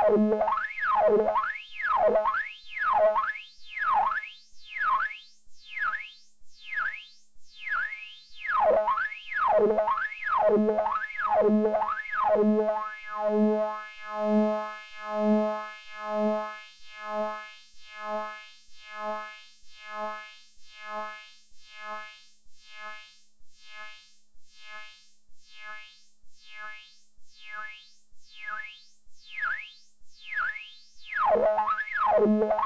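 Synthesizer tone from a triangle wave through a DIY Moog-style transistor ladder highpass filter, its cutoff modulated so that a resonant peak sweeps down and back up about once a second over a pulsing tone. About twelve seconds in, the sweeping stops and the tone pulses on, growing thinner. Faint sweeps return in the upper range near the end.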